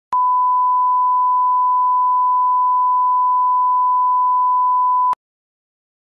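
Reference test tone: a single steady, pure beep held for about five seconds, switched on and off abruptly with a click at each end.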